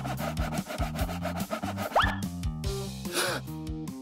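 Metal nail file rasping back and forth against a steel cell bar in quick strokes, which stop about two seconds in with a short rising whistle-like glide, over background music.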